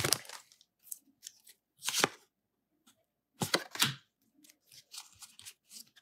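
Pokémon trading cards and a torn foil booster-pack wrapper being handled: a few short rustles and snaps, one about two seconds in and a short cluster around three and a half seconds, with quiet between.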